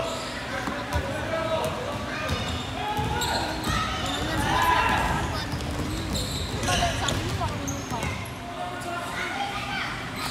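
A basketball bouncing on a hardwood gym floor during a youth game, with players and spectators calling out throughout.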